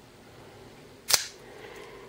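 Smith & Wesson Special Ops spring-assisted linerlock folding knife flicked open: the blade snaps out and locks with one sharp click about a second in.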